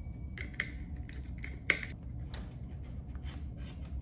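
Small clicks and scrapes of a screwdriver working terminal screws on a plastic wall switch and lamp holder while copper wires are handled. The loudest click comes just before two seconds in.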